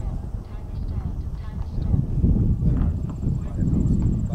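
Low, irregular wind rumble on the camera microphone, with people talking faintly in the background.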